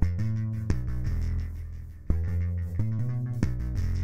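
Gritty synth bass line playing back in FL Studio Mobile: a handful of held low notes with a buzzy edge, heard through the Spacer plugin with its stereo separation at the default setting.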